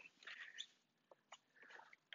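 Near silence, with a few faint short clicks and rustles.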